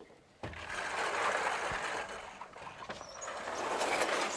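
A sliding lecture-hall blackboard being pushed along its frame: a knock about half a second in, then a continuous scraping rumble for about three seconds.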